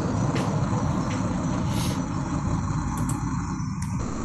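Steady low rumble of a car's running engine and cabin noise, picked up by a video-call microphone inside the car.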